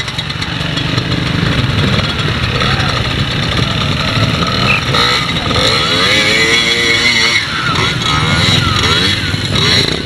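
Small youth trials motorcycle's motor revving as it is ridden over obstacles, its pitch rising and falling repeatedly from about six seconds in.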